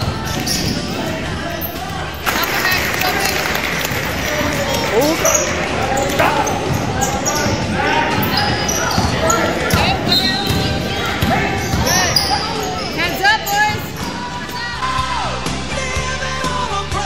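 Basketball game in a gym: the ball bouncing on the floor and sneakers squeaking in short chirps, over the voices of players and spectators.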